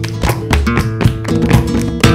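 Background music: acoustic guitar in flamenco style, with sharp strummed strokes several times a second and chords ringing between them.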